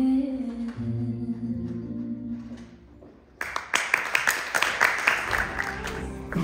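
A slow sung song plays and fades out about three seconds in; then audience applause breaks out suddenly and carries on.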